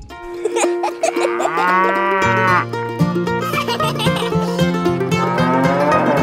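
A cow mooing, one long drawn-out call about a second and a half in and more near the end, over light background music.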